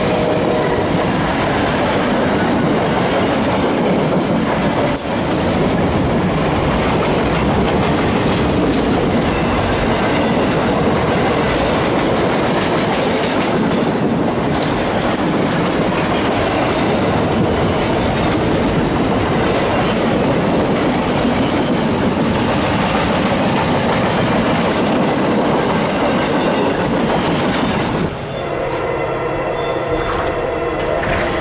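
Freight train of loaded flatcars rolling past at close range: a steady loud noise of steel wheels on rail and rattling cars. Near the end it cuts off to a quieter scene with a faint steady tone.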